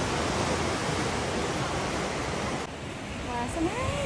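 Sea surf breaking and washing over rocks below a cliff, a continuous rushing noise. About two-thirds of the way through it cuts to a quieter stretch of surf with a few brief high gliding voice-like calls.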